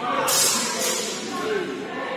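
Indistinct voices talking in a large sports hall, with a brief hiss about a quarter of a second in.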